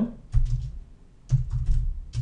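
Typing on a computer keyboard: two short runs of quick keystrokes, about half a second in and again a little past one second.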